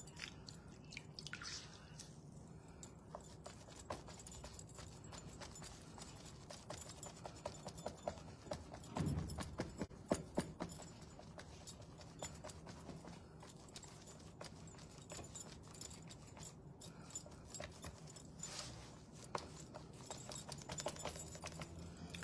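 Faint rubbing of a damp cloth over a wetted paper paint-inlay sheet, with many small scattered clicks and taps and a soft thump about nine seconds in.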